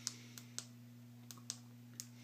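Several faint, sharp clicks, in rough pairs, from the buttons of a handheld digital battery analyzer being pressed, over a steady low electrical hum.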